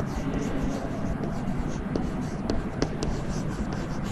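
Chalk writing on a chalkboard: short scratching strokes and a few sharp ticks as the letters go down, over a steady low background hum.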